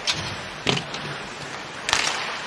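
Hockey sticks and puck cracking on the ice: three sharp impacts, one at the start, one at about two-thirds of a second and the loudest near the end, over a steady arena crowd.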